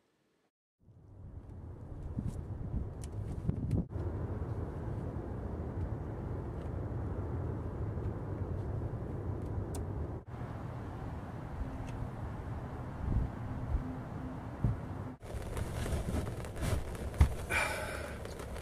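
A steady low rushing noise, then, from about 15 seconds in, heavy rain drumming on the shelter's plastic sheet roof, heard from inside, with a few knocks.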